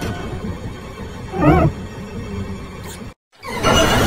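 Heavily distorted, pitch-shifted logo music from a 'G Major' audio-effect chain, with a wavering cry about a second and a half in. A little after three seconds it cuts out abruptly for a split second, then the loop starts again loud.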